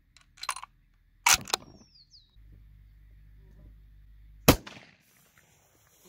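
Sharp metallic clicks from a Mossberg Patriot bolt-action rifle being handled and its bolt worked between shots: a few light clicks about half a second in, a louder clack just after a second, and the loudest single clack about four and a half seconds in.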